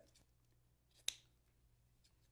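A single snip of scissors cutting a ribbon tail, sharp and brief, about a second in, over near silence with a faint steady hum.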